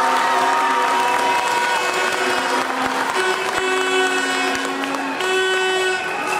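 Arena crowd applauding and cheering after a touch that levels the score, with long steady pitched tones sounding over the crowd noise in the second half.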